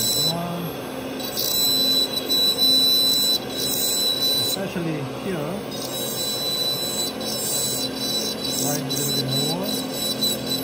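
Dental laboratory handpiece spinning a carbide bur against a stone model tooth: a steady high whine that drops out briefly a few times, under a low voice.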